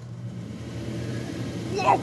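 Electric exhaust fan switched on and running up to speed: a steady hum and rush of air that grows gradually louder.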